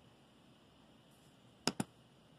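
Two quick clicks of a computer mouse, a double-click, near the end, over faint room tone.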